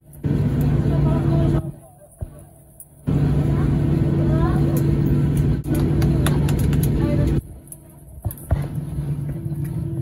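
Airliner cabin noise during taxi-in after landing: a steady low hum from the engines turning at low power, with passengers' voices faintly in the background. It cuts out abruptly about one and a half seconds in, comes back about three seconds in, and falls to a lower level after about seven seconds.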